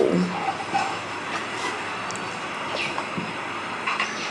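Steady rumbling background noise, with a few light knocks and clicks as bowls are handled beside the cooking pot.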